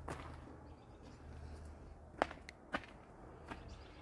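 Faint footsteps on gravel, heard as a few sharp clicks, the loudest about two seconds in.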